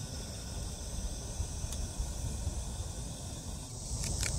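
A steady, high-pitched chorus of summer insects, with wind noise buffeting the microphone underneath.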